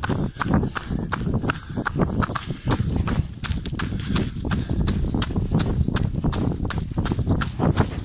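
A runner's footsteps striking a wet road in a quick, even rhythm, picked up by a handheld phone that jostles with each stride.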